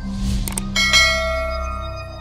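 Subscribe-button animation sound effects over background music: a short whoosh, a quick double mouse click about half a second in, then a bell ding that rings out and slowly fades as the notification-bell icon appears.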